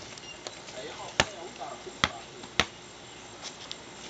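A basketball dribbled on a paved walkway: three sharp bounces starting about a second in, each a little over half a second apart.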